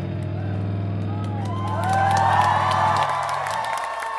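Electric guitar and bass hold a final chord that cuts off about three seconds in, as the audience breaks into cheering, whoops and clapping.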